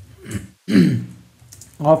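A man clearing his throat once, a short rough vocal sound, followed near the end by the start of speech.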